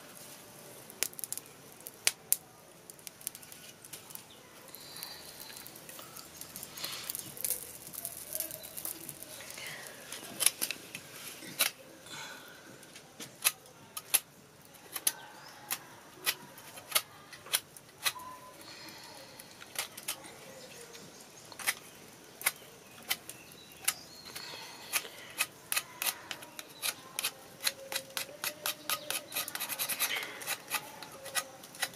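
Sharp irregular clicks and scrapes of a large kitchen knife blade working over a fire-singed chicken head, scraping off the charred skin and beak, the strokes coming quicker near the end.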